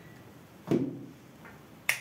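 Two short sharp clicks on a workbench about a second apart, the second crisper and brighter than the first.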